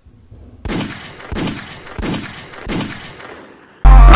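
Four sharp bangs, evenly spaced about two-thirds of a second apart, each fading in a short echoing tail; loud music cuts in near the end.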